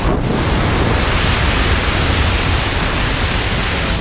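Loud, steady rush of wind buffeting the camera microphone at the open door of a jump plane, as a tandem skydiving pair climbs out to exit.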